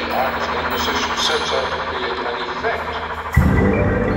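Indoor percussion ensemble playing with its show's electronic soundtrack, a spoken voice mixed in. Near the end a loud, sustained low bass note comes in suddenly and holds.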